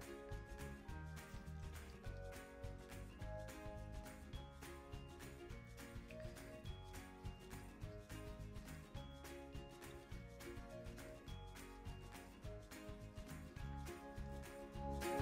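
Quiet background music with a steady beat, a bass line and shifting melodic notes.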